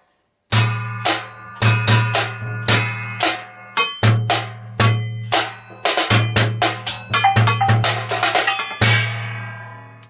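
A junk-percussion drum kit played with sticks in a steady beat: a paint-tin bass drum thudding under the sharp, ringing metallic hits of a fruitcake-tin snare drum and metal trays. It starts about half a second in, the strokes come faster near the end, and the last hit rings out.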